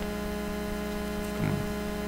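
Steady electrical hum with a faint hiss from the chamber's microphone and sound system, with a brief faint voice about one and a half seconds in.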